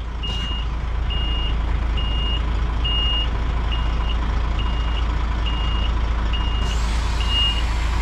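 Diesel truck tractor running at idle while its reversing alarm beeps a single high tone about once a second as it backs up. A steady hiss comes in near the end, in step with the air suspension being raised.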